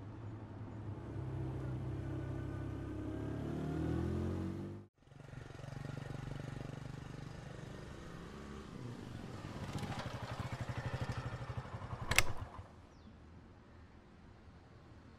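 Motorcycle engine running as the bike is ridden, its pitch rising a few seconds in. The sound cuts out abruptly near five seconds and comes back, then the engine slows with an audible firing beat, a sharp clack is heard near the end, and it falls much quieter as the bike comes to a stop.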